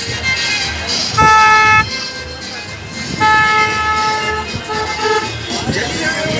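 A vehicle horn honking among a crowd of vehicles. There are three steady blasts: one of about half a second a little after the first second, a longer one of about a second a little after three seconds, then a brief weaker one.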